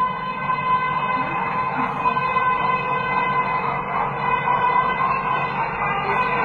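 Mehter (Ottoman military band) music played over a loudspeaker, a steady held reedy tone over a low drone.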